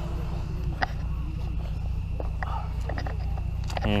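A steady low hum, like an idling engine, with faint voices in the background and a few soft clicks.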